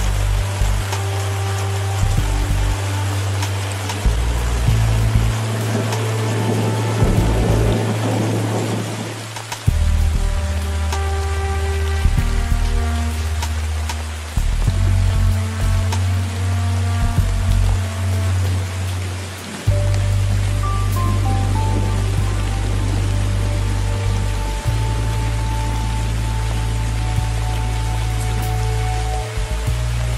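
Slow ambient music of long held bass notes that change every few seconds, with scattered higher tones, over the steady hiss of rainfall.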